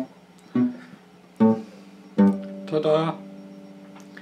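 Solid-body electric guitar picked in a slow phrase, a note or chord about every three-quarters of a second, the last one left ringing.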